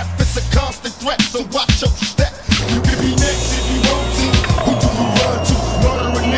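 Skateboard wheels rolling over rough concrete, with sharp clacks of the board, over a hip hop track with a heavy bass beat. About two and a half seconds in, the sound changes to a louder, rougher roll.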